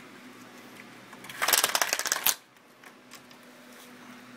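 Horizontal window blinds clattering: a rapid run of clicks for about a second, starting about a second and a half in.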